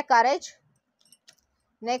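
A woman's voice breaks off, then a short pause with a few faint clicks of tarot cards being handled as the next card is drawn.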